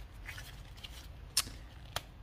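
Hand wire stripper closing on a stranded copper wire and pulling the insulation off the end: faint handling noise, then two sharp clicks, about a second and a half in and again near the end.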